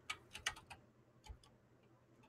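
Light computer-keyboard keystrokes, about five scattered clicks in the first second and a half, as a two-factor verification code is typed at an SSH login prompt.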